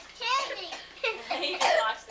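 Young children's high-pitched voices, talking and calling out, with a louder, rougher vocal burst near the end.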